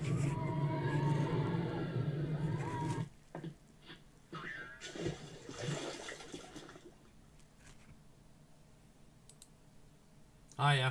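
Soundtrack of a promo intro: a loud, steady low rumble with gliding tones that cuts off abruptly about three seconds in. A few brief rushing, whoosh-like effects follow until about seven seconds, then only faint background.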